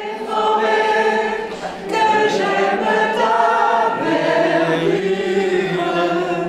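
A group of voices singing a French Christmas carol together, with long held notes and a short break about two seconds in.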